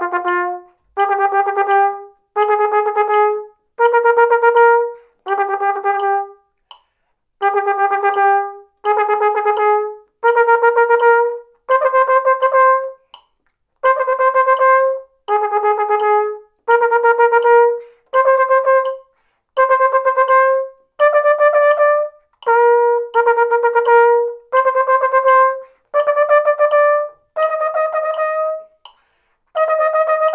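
Benge flugelhorn playing a triple-tonguing exercise: rapid repeated tongued notes in bursts of about a second, with short gaps between, the pitch climbing gradually over the exercise.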